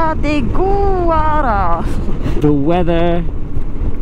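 A person talking in short phrases over the steady low noise of wind and a moving motorcycle.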